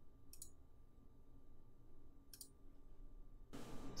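Faint computer mouse clicks: a short click about half a second in and another about two seconds later.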